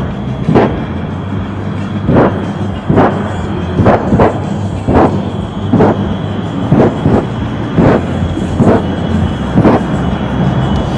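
Shockwave jet truck's three jet engines popping their afterburners again and again, "a little burner pop" each time. About a dozen sharp bangs come roughly once a second over the engines' steady rumble.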